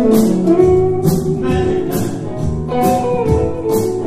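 A live band playing blues-rock: electric guitar notes over drums, with a steady beat of drum and cymbal hits about twice a second.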